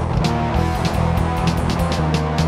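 Instrumental stretch of a fast hardcore punk song played from a 7-inch vinyl record: distorted electric guitar and bass over drums with a steady beat of cymbal and snare hits.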